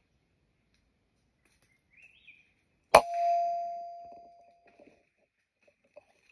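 A single air rifle shot about three seconds in: a sharp crack followed by a metallic ring that dies away over about a second and a half.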